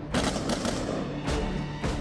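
Several rifle shots at uneven intervals during a live-fire close-quarters drill, heard over background music.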